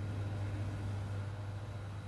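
Steady low electrical hum with a faint hiss, from a running CRT television.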